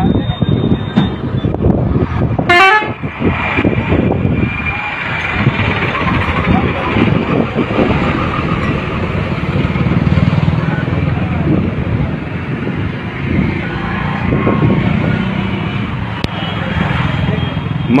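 Indistinct voices of a crowd over the noise of trucks, with a short horn-like toot about two and a half seconds in.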